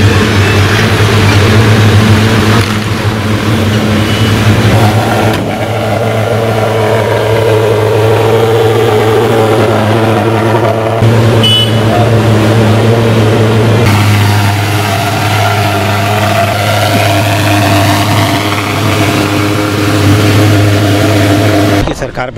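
Van engines running, a steady low drone with shifting higher tones over it.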